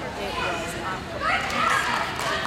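Excited, high voices in a large room, rising louder about halfway through.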